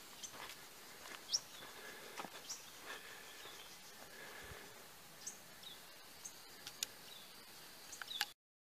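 Faint woodland ambience with a few short, high bird chirps and soft scattered footsteps on a dirt trail.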